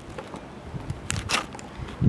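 Low handling noise from a hand-held camera being moved, with two brief rustles a little past the middle.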